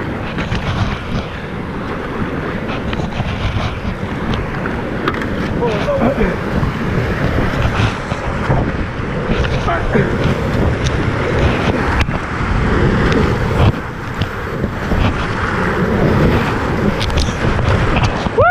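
River whitewater rushing and splashing around an inflatable kayak as it is paddled into a rapid, growing louder as the boat enters the rough water, with wind and spray buffeting the camera's microphone.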